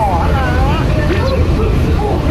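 Walt Disney World monorail running: a steady low rumble under a woman's voice.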